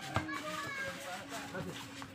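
Voices of players and onlookers calling out during a pickup basketball game, with no clear words, and one sharp thump just after the start.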